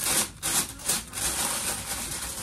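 Packaging rustling and scraping under hands as a wrapped order is folded and smoothed flat on a paper-covered table: a few quick strokes, then steadier rubbing.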